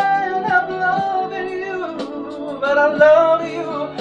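A man singing a wordless R&B ad-lib into a handheld microphone, holding long notes that bend and waver in pitch, over a backing track.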